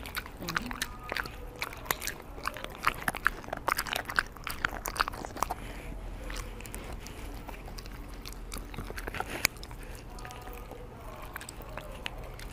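Corgi eating soft scrambled egg, its chewing and licking making rapid wet smacks and sharp clicks of teeth, dense for the first half and sparser later, with one louder click near the end.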